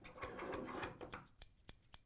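Heavy-duty stainless steel dressmaking shears worked while lying flat on a wooden tabletop: about a second of scraping and rapid clicking as the blades slide along the surface, then a few separate clicks of the blades closing.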